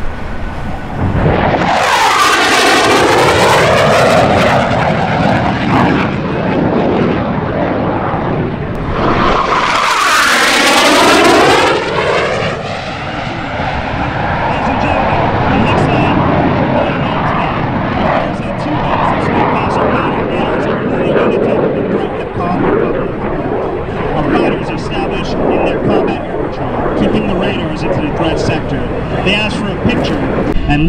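Northrop F-5N Tiger II jet fighters, twin J85 turbojets, flying passes overhead. Two loud passes come about two seconds in and again about ten seconds in, each with a sweeping rise and fall in pitch as the jet goes by, followed by a steady jet roar while the fighters manoeuvre.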